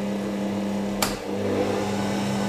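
Stand mixer's electric motor running with a steady hum as it mixes flour in its steel bowl, with one sharp click about a second in.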